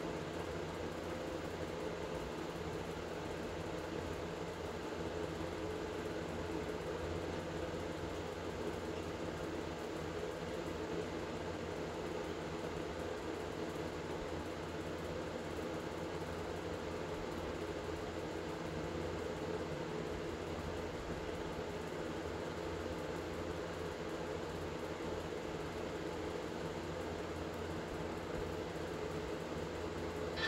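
Steady background hum and hiss with no distinct events: constant room noise.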